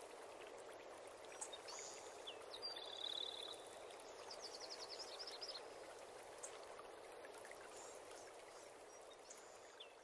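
Faint running-water ambience with scattered bird chirps, including a quick trill about three seconds in and a run of short chirps around five seconds.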